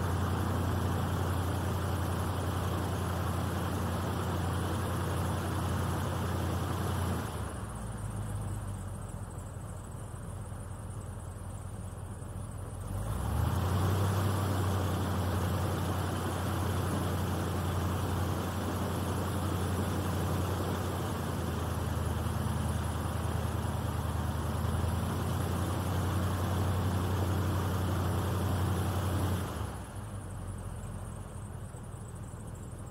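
Airboat engine and air propeller running steadily. It eases back for about five seconds partway through, then throttles up again, and drops off just before the end.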